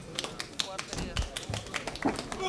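Voices calling out in a fight arena over a string of sharp taps or claps, with two low thumps just past the middle.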